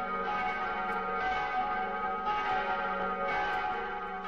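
Church bells ringing, with a new strike about once a second, four strikes in all, each ringing on into the next.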